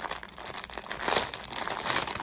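Thin plastic packaging bag crinkling and crackling irregularly as it is handled.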